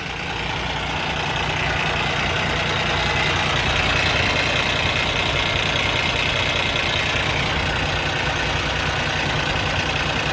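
Cummins ISX inline-six diesel idling steadily at operating temperature, heard up close in the open engine bay. It grows louder over the first couple of seconds as the microphone nears the engine.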